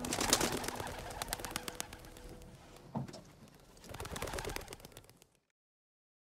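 Birds, with a fast run of sharp clicks that fades over the first two seconds, a short call about three seconds in and another brief burst near the end, cutting off to silence a little after five seconds.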